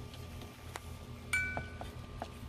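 A single bright, chime-like ringing clink about a second and a half in, two clear notes dying away over about half a second, after a faint tap.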